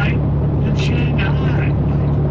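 Steady low drone of a vehicle's engine and tyres heard inside the cabin while driving at highway speed. A voice talks briefly in the middle.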